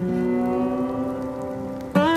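Background music: a guitar chord struck once and left ringing as it slowly fades, with a new chord struck just at the end.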